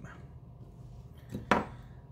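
Two sharp knocks of hard pieces of a fossil dig-kit brick, close together about a second and a half in, the second louder.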